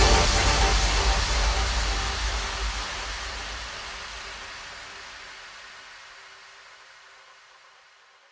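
The closing tail of a trance track: once the beat stops, a wash of white noise over a low rumble fades steadily away to nothing.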